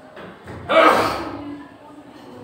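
A person's sudden loud burst of breath, like a gasp, about a third of the way in, fading over about a second.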